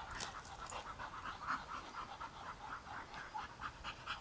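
A dog panting faintly and steadily, about three to four quick breaths a second.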